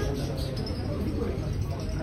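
Background chatter of a large crowd of spectators around a pool table, steady and indistinct, with a brief high squeak about half a second in.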